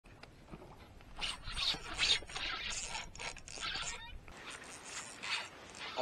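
Irregular scratchy rubbing and handling noise as an angler works a spinning rod and reel. A low rumble runs under it and stops about four seconds in.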